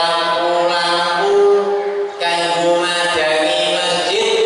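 A man chanting a melodic recitation into a microphone, with long held notes and pitch glides between them.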